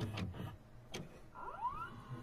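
Faint clicks, then a brief rising whirr in the last half second: an editing sound effect laid under a VHS-style end card.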